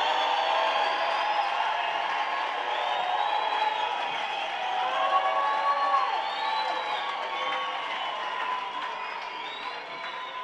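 A congregation cheering and shouting in excitement, many voices at once with high drawn-out cries and whoops. The noise slowly dies down over the last few seconds.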